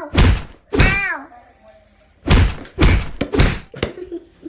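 A string of dull thuds as a doll is knocked about on the floor close to the phone: one just after the start and a quick run of them in the second half. A child's short wordless squeal about a second in.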